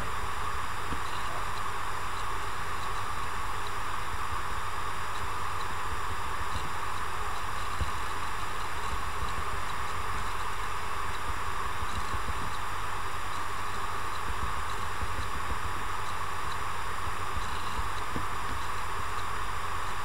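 Steady background hiss with a low hum underneath, unchanging throughout, with no other sound on top.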